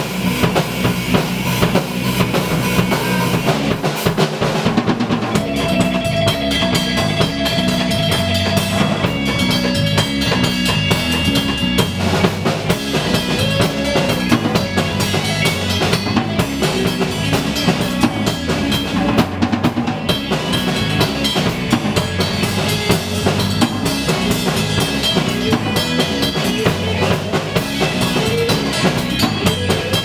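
Rock band playing: a drum kit with kick and snare keeping a steady beat, under electric guitar, with a held guitar note a few seconds in.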